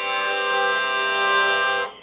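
Aquitaine hurdy-gurdy's wheel bowing the drone strings with the trumpet string now engaged: one steady chord held at a single pitch, which stops suddenly near the end.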